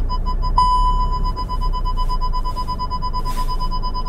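SEAT Tarraco parking-sensor warning beeps, quickly repeated, that merge into one unbroken tone about half a second in. The unbroken tone is the signal that the car is very close to the obstacle ahead as it finishes parking forwards.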